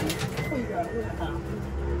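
Domestic pigeons cooing softly in the loft.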